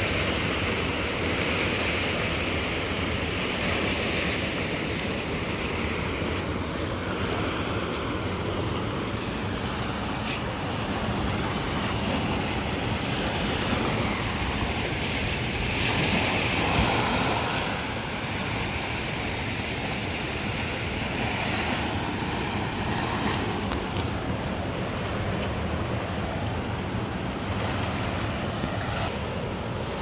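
Ocean surf breaking and washing up a sandy beach at high tide, a steady rush that swells louder a few times, most clearly about sixteen seconds in.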